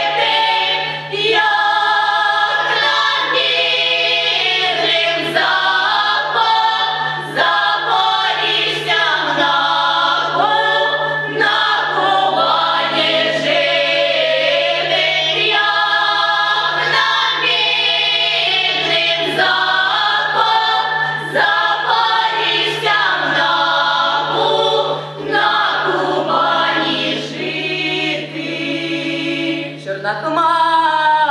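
A young mixed folk choir, mostly girls' voices, singing a Ukrainian folk song a cappella, with long held notes. A steady low hum runs underneath.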